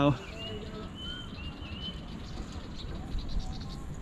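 Outdoor ambience: a few faint, short, high-pitched bird calls in the first couple of seconds over a low steady background rumble.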